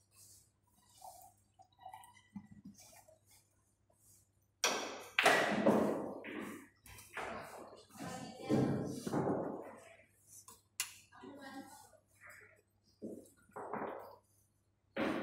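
Indistinct talking by people close by, with a single sharp click about three quarters of the way through.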